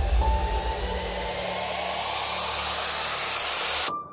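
Logo-intro sound effect: a rising whoosh of noise that swells steadily and cuts off suddenly near the end, giving way to a single steady held tone.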